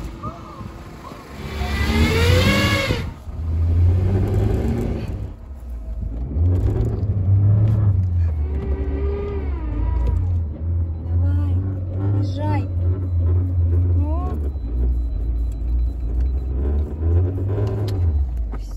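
Car engine revved up and down repeatedly while the car sits stuck in mud, with the revs rising and falling every second or two.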